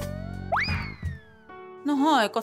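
Dramatic background-score sting: a low drone, then a synthesized tone that sweeps sharply upward about half a second in and slowly falls away, with steady held chord tones coming in near the end.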